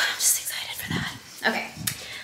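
A woman speaking in a hushed, mostly whispered voice.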